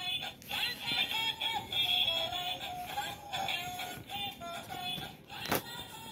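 Electronic tune from a kids' ride-on toy car's musical steering wheel: a simple melody of thin, high tones. A single knock sounds near the end.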